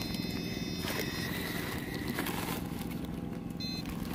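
A steady, low mechanical drone with a fine, even pulse. A thin high whine rides over it, cuts off about a second in, and returns briefly near the end.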